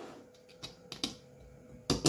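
A few light clicks and taps of small steel screws being set by hand into the holes of a 3D-printed plastic motor mount, the sharpest one near the end.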